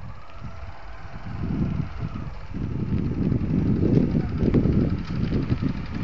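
Low, uneven rumble of wind buffeting the microphone, swelling about a second in and easing near the end.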